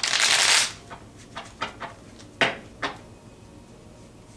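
A deck of tarot cards shuffled in one quick, loud burst lasting under a second, followed by several short, sharp clicks of the cards being handled.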